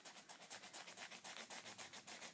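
Green Sharpie marker scribbling on a paper coffee filter in quick, faint back-and-forth strokes, about seven a second, as a shape is drawn and coloured in.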